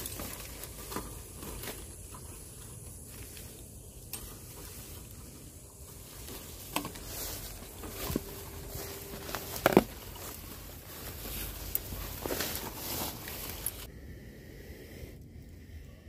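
Footsteps and rustling through leafy undergrowth and ferns, with scattered sharp snaps and clicks. The loudest snap comes a little before the halfway point, and the rustling thins out near the end.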